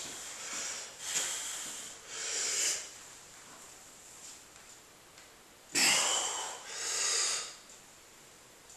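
A man breathing hard through nose and mouth while straining to bend a steel wrench by hand: four forceful breaths in two pairs, one pair in the first three seconds and another near the end, with a quiet stretch of held breath between.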